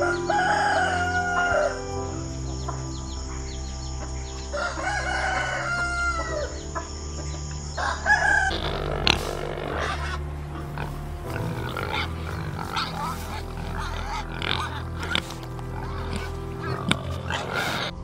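Rooster crowing: two long crows in the first six seconds and a shorter call near eight seconds. After that comes a stretch of short, rough noises, with soft piano music underneath throughout.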